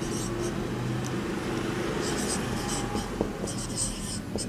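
Marker pen writing on a whiteboard: clusters of short scratchy strokes as a word is written letter by letter, over a steady low hum.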